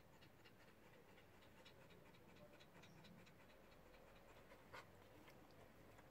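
Akita Inu dog panting faintly in quick, even breaths, with one sharper click a little before the end.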